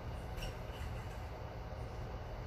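A man sniffing the perfume sprayed on his wrist: one faint, short sniff about half a second in, over a steady low room hum.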